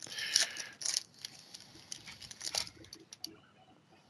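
Foil wrapper of a trading-card pack crinkling as it is torn open by hand, with light rustles and clicks that thin out after about three seconds.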